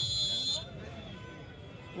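Referee's whistle blown once at the start, a steady shrill tone lasting under a second, ending the raid after a tackle; faint crowd background follows.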